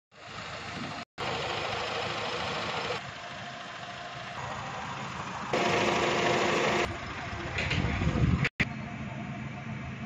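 Hyundai i10 1.1 four-cylinder petrol engine running at idle, with a louder stretch of about a second and a half just past the middle. The sound cuts out completely twice, briefly, near the start and near the end.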